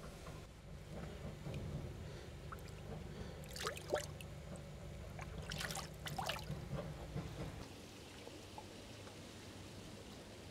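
Water splashing and trickling in a shallow plastic koi bowl as a small koi is scooped up by hand, with a few sharper splashes around four and six seconds in.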